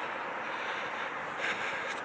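Steady outdoor street ambience: a low, even hiss with no distinct events.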